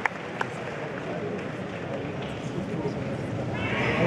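Arena crowd noise between songs: a wash of audience chatter with a few scattered claps. It swells near the end as held tones come in.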